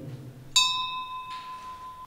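A single bright bell-like ring, struck about half a second in: one clear tone keeps ringing while its higher overtones fade out within about a second.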